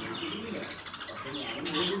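Birds calling in the background, with a brief higher chirp near the end.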